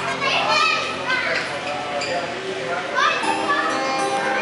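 Children's high-pitched voices calling and chattering over a steel-string acoustic guitar being played.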